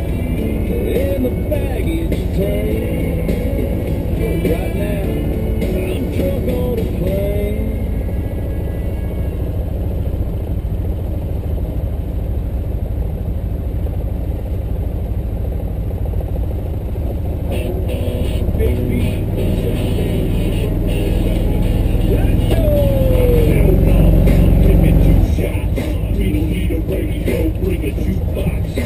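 A vehicle's engine running with a steady low rumble, swelling in the last third as the vehicle moves off and dropping away sharply a few seconds before the end, with music playing over it.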